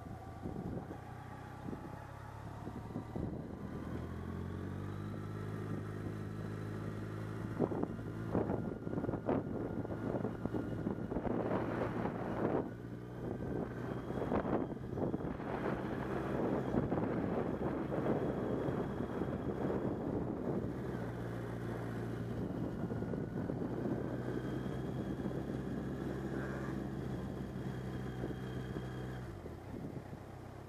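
Motorcycle engine running at a steady road speed, with wind buffeting the microphone. The engine note steps up about four seconds in, the wind is heaviest in gusts through the middle, and the engine note falls away just before the end.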